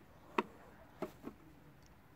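Three short light knocks, the first the loudest, as cut apple pieces are handled and knocked against a plastic kitchen scale.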